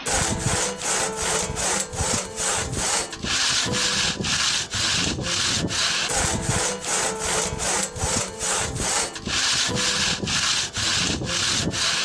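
Large crosscut handsaw cutting through a log, back and forth in quick, even rasping strokes, about three a second.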